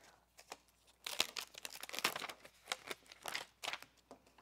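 A sheet of clear stamps on its plastic backing crinkling and crackling in the hands as a stamp is peeled off it, in a run of irregular crackles starting about a second in.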